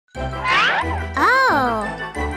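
Bright intro jingle with chiming notes over a steady bass line. A high sliding tone rises once, then swoops up and back down.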